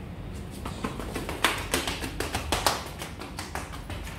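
A run of light, irregular taps and knocks, several a second.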